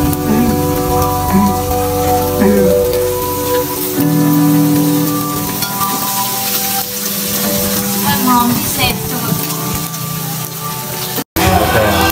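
Meat sizzling on a grill pan, under background music with long held notes. The sound drops out for a moment near the end.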